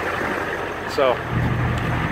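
A truck engine idling, a steady low drone that gets a little stronger about halfway through.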